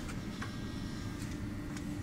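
Quiet background room noise with a faint steady hum and one light click about half a second in.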